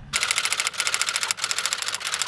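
Typewriter sound effect: rapid, evenly spaced keystroke clacking that starts almost at once and pauses briefly twice.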